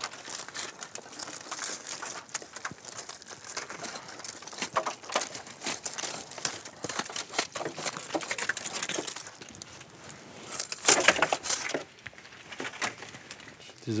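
Clusters of young oyster shells crackling and clattering as they are stripped by hand from spat-collector sticks and dropped into a plastic crate, with a louder flurry of scraping about eleven seconds in.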